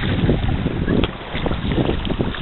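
Wind rumbling unevenly on the microphone, over water lapping and splashing around swimming English cocker spaniels.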